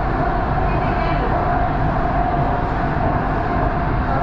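Inside a BTS Skytrain car running along the elevated track between stations: a steady rolling rumble with a steady hum running through it.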